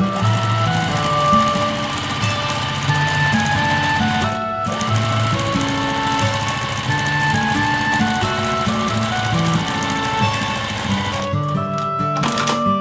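Domestic sewing machine running steadily, topstitching a zipper into cotton fabric, under light background music. The stitching stops briefly about four and a half seconds in and ends shortly before the close.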